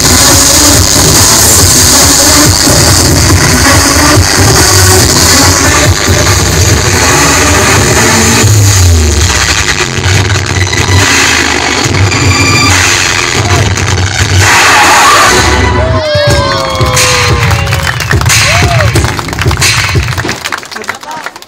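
Loud electronic dance music mix played through a sound system, with a pulsing heavy bass beat. About four seconds before the end the beat drops out and gliding, sweeping tones take over before the sound falls away.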